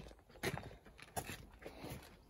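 Faint footsteps, about three steps at walking pace.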